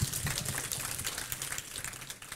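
Audience applause, a dense patter of many hands clapping, dying away.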